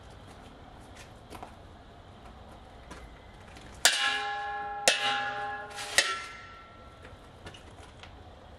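A wooden practice sword strikes a metal jingasa (conical war hat) held as a buckler, three times about a second apart. Each hit is a sharp clang that leaves the hat ringing with several tones that fade over about a second.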